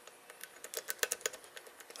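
A quick, irregular run of light metal clicks as a thin, flexible Peterson Bogota rake is rocked up and down in the paracentric keyway of a Best multi-shearline lock core, its tips flicking the pin stacks under light tension. This is a random raking attack meant to set the pins at one of the lock's two shear lines. The clicks come thicker in the second half.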